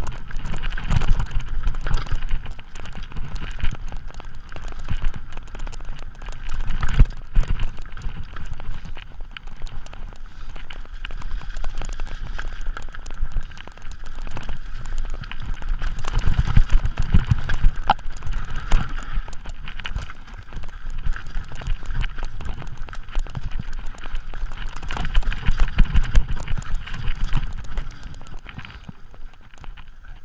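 Mountain bike riding fast down a rocky trail: a continuous clatter of tyres over loose stones and the bike rattling over bumps, loudest in rough patches about a second in, around seven seconds, and in the middle of the run. A low rumble of wind on the camera microphone runs under it.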